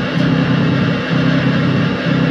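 Loud, heavily distorted noise music: a thick, low, buzzing drone that swells and dips about once a second.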